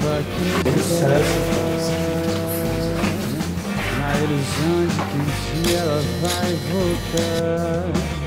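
A rock song played by a band, with guitar and a sung melody line.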